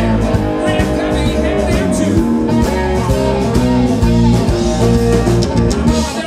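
Live electric blues band playing an instrumental passage: lap slide guitar over bass guitar and a drum kit.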